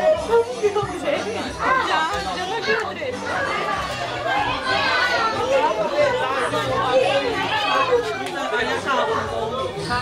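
Several people talking at once, adults' and children's voices overlapping in lively chatter.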